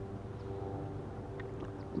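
Small boat motor running steadily: a low hum with a few held tones that do not change pitch.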